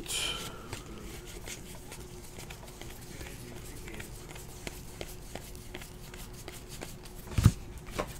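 Trading cards being flipped through by hand, with faint, scattered clicks of card on card and a low thump near the end. A faint steady hum lies underneath.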